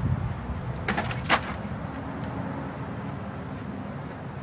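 A Jack Russell terrier jumping at plastic sheeting: two short crackles of plastic about a second in, over a steady low rumble.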